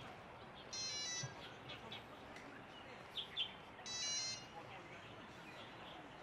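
A bird calling twice, about three seconds apart, each call about half a second long, with a few short, softer chirps in between.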